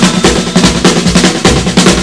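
Drum fill on a 1960 rock and roll record: rapid snare hits in quick succession over a bass line, with no vocal, leading back into the guitar.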